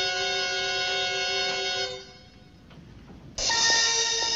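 1968 orchestral TV score music: a held chord that fades out about halfway through, a short quiet gap, then a new cue that starts suddenly with a loud chord near the end.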